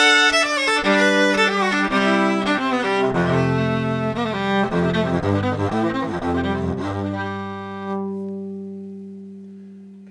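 Six-string hollow-body electric violin being bowed, heard direct through an Avalon U5 Class A preamp with no tone curve engaged. A quick run of notes steps downward into the instrument's low strings and ends on a long held note that slowly fades away.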